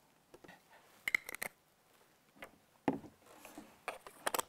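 Plastic camera body cap and lens caps being twisted onto a DSLR body and lens: a quick cluster of faint clicks and snaps about a second in, and another click near three seconds.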